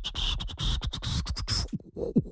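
Beatbox-style music with record-scratch sounds: a rapid run of sharp clicks and hissy strokes over a held high tone that rises slightly, then cuts out briefly near the end.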